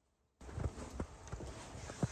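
Footsteps on a bare wooden subfloor: short hollow knocks, about three a second. A steady hiss comes in abruptly about half a second in.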